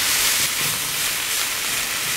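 Grated carrot, celery, red onion and diced bacon sizzling steadily in a frying pan as a metal spoon stirs them. They are frying in the fat rendered from the bacon, with no oil added.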